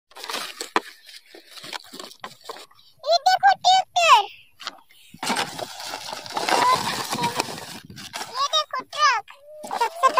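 Cardboard parcel being torn open and the plastic blister packs inside rustled and crinkled, with a child's high voice breaking in briefly twice.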